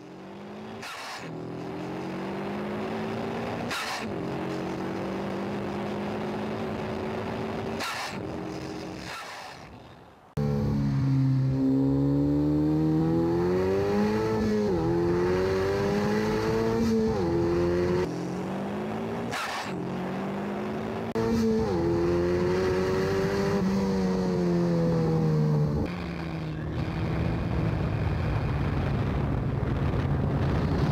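Ariel Atom's engine heard onboard under hard driving: the revs climb and drop repeatedly as it pulls through the gears, with brief dips at the shifts. The first third is a steadier, quieter engine drone that fades in and then out, and the loudness jumps abruptly at several points where clips are cut together.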